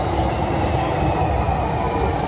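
Steady, loud rumble of an electric train moving in the station.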